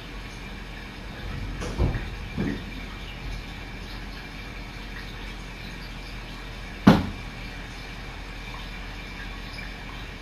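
Steady room hiss with a faint high whine. Two soft thumps come about two seconds in, and one sharp knock, the loudest sound, comes near seven seconds.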